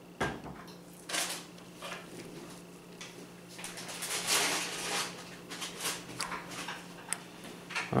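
Small metal clicks and scrapes of a steel pick working against a Craftsman 1/2" ratcheting breaker bar adapter, pushing down its spring-loaded detent ball while the selector ring is slid over it. The light taps come scattered, with a busier stretch of scraping about halfway through.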